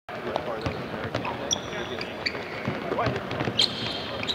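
A basketball bouncing on a hardwood court, with sharp irregular knocks from the ball and footfalls. Sneakers squeak briefly a couple of times.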